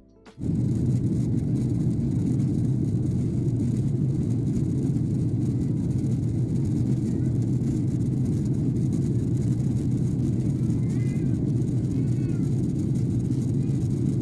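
Steady low roar of airliner cabin noise from an Airbus A330 in cruise flight, heard from a window seat. It cuts in suddenly about half a second in.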